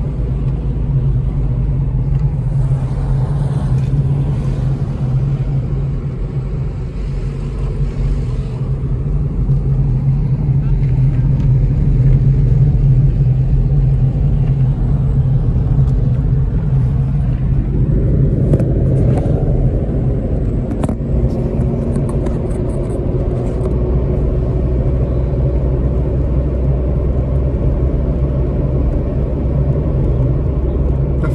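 Steady low drone of a car driving, heard from inside the cabin: engine and road noise. The sound grows fuller a little past halfway.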